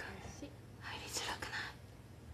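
Soft whispered speech, breathy and unvoiced, in short phrases, over a faint steady low hum.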